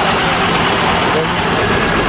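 A vehicle engine idling steadily amid loud, continuous street-traffic noise.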